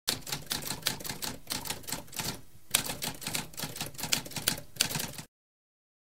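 Typewriter keys being struck in rapid runs, with a short pause about halfway through, stopping suddenly a little after five seconds in.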